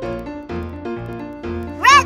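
Light children's background music with steady piano-like notes. Near the end comes a short, loud meow-like call that rises and falls in pitch.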